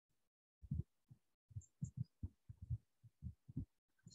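Faint, soft low thumps, a dozen or so at irregular spacing, with no speech.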